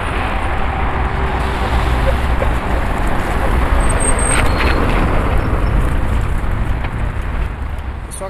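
Steady wind rushing over the microphone together with road and traffic noise while moving along a street. It carries on unbroken throughout, strongest in the low rumble.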